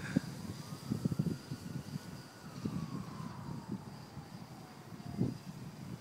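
Dodecacopter, a twelve-rotor electric multicopter, flying: its motors and propellers give a faint whine that slowly falls in pitch over several seconds, with a thin steady high tone, under gusty wind rumble on the microphone.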